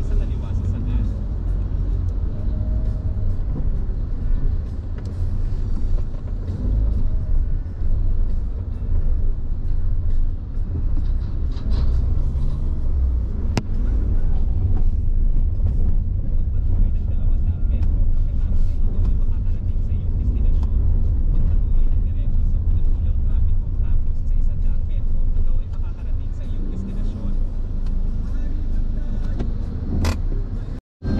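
Steady low rumble of a car driving through city streets, heard from inside the cabin.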